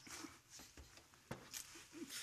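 Near silence: faint room tone, with one soft click a little after a second in.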